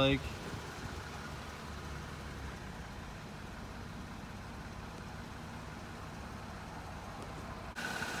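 Steady, even background noise with no distinct events, fuller and lower for the first couple of seconds.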